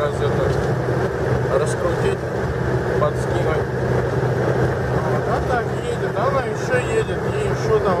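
Car cabin at highway cruising speed, about 120–130 km/h: a steady drone of engine and tyres on a wet road, with a low constant hum.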